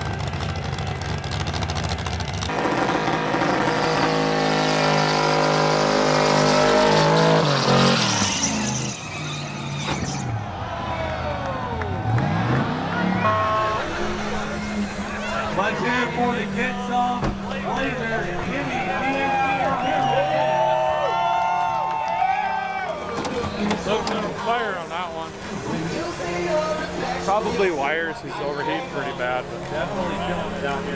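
A burnout competition car's engine revving hard, its pitch climbing steadily for about six seconds to a peak and then falling away. After that, music and voices over the event sound.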